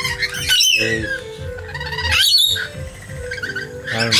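Rainbow lorikeets giving short, sharp squawks, one about half a second in and another about two seconds in, over steady background music.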